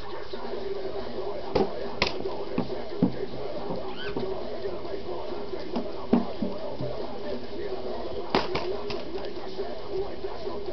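Indistinct voices over a steady hum, broken by several sharp knocks, the loudest about six seconds in.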